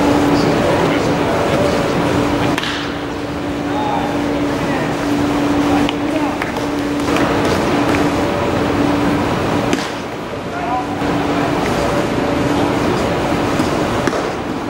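Ballpark ambience between pitches: indistinct chatter from spectators and players over a steady background hum and noise, with a few faint knocks.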